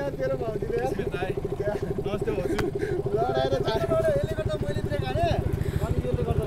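A motorcycle engine idling steadily with an even, rapid low pulse, with voices talking over it.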